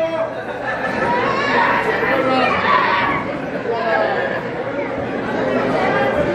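Crowd chatter: several voices talking and calling out over one another at once, with no one voice standing out.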